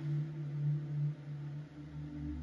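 A low, steady hum made of a few held tones.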